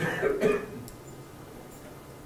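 A man's short throat-clearing cough, two quick bursts in the first half second.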